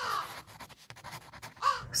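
A crow cawing once, a short harsh call at the start.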